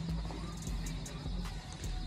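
Store background music playing through the shop's sound system, heard faintly under the room's steady hum, with a few light clicks.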